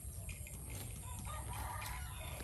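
A rooster crowing once in the background, starting about halfway through and lasting about a second. Short, crisp clicks come from a zebu cow tearing and cropping grass as it grazes.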